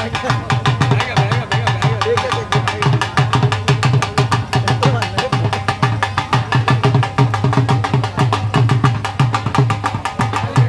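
Punjabi dhol drummed without a break in a fast, steady rhythm. Deep bass-head thumps sit under a rapid run of sharp stick strokes.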